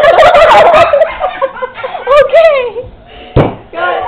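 Women laughing hysterically in high-pitched, squealing bursts that die away about two and a half seconds in, followed by a single thump near the end.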